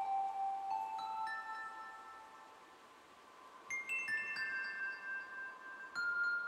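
Modular synthesizer playing sustained bell-like tones at shifting pitches, the notes overlapping as they ring. The sound thins out around the middle, then a fresh cluster of higher notes enters a little past halfway.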